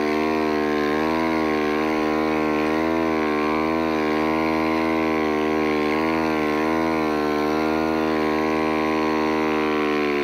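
Snowbike engine running steadily under throttle while pulling through deep powder snow, its pitch wavering slightly up and down as the throttle is worked.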